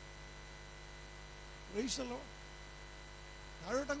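Steady electrical mains hum in the sound system, a low buzz with faint high whining tones, broken twice by a man's brief words into a microphone.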